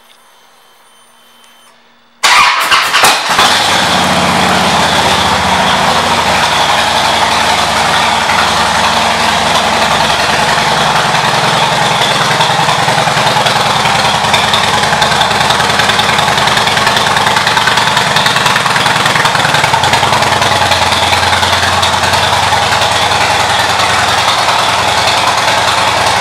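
A 2009 Harley-Davidson Super Glide Custom's air-cooled Twin Cam 96 V-twin, fitted with aftermarket pipes, cranks and fires about two seconds in, then settles into a steady loud idle, its revs easing down over the next several seconds.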